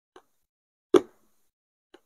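Short, sharp eating sounds at a meal table: a loud click about a second in, with fainter ones just before and near the end.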